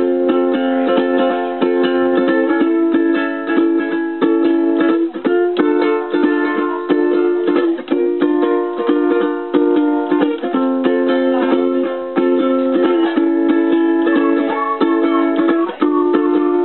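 Ukulele strumming chords in a steady rhythm, the chord changing every couple of seconds, with no singing.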